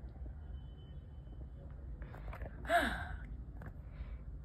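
A single short, breathy vocal sound falling in pitch, like a sigh, near the end, over a low steady rumble of handling noise.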